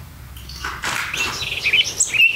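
Small birds chirping and twittering: short high calls that come in over the second half and keep going.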